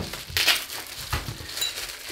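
Plastic wrapping crinkling and rustling in short, irregular bursts as a glass beer bottle is pulled out of it.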